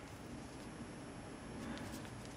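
Quiet room tone with a faint steady high-pitched whine.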